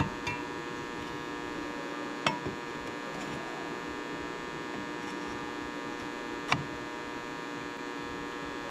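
Steady electrical hum with many overtones, broken by two sharp metallic knocks, about two seconds in and again about six and a half seconds in, as a cut steel pipe section is fitted into a pipe pedestal post.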